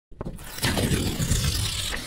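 Logo-intro sound effect: a rushing whoosh of noise that starts abruptly, swells about half a second in and then holds steady.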